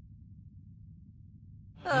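A hushed pause with only a faint low hum, then near the end a cartoon character's voice lets out an 'uh' sigh that falls in pitch.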